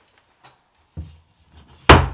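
A strip of 5 mm steel plate set down flat on a workbench: a light knock about a second in, then a loud knock near the end that dies away briefly.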